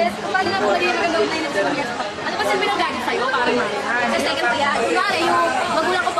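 Speech: young women talking with each other in conversation.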